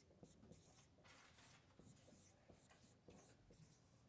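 Faint strokes of a dry-erase marker writing on a whiteboard: a series of short, light scratchy squeaks as letters are written.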